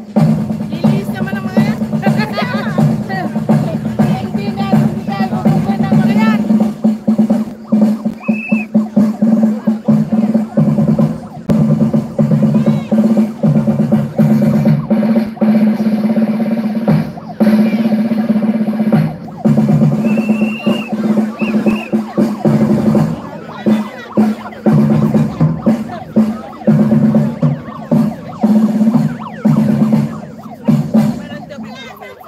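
Drum-heavy music with snare-drum rolls and bass-drum beats in a steady rhythm, with crowd voices mixed in.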